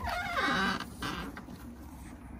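An RV's exterior storage compartment hatch being unlatched and swung open, with a short wavering squeak from the hatch in the first second.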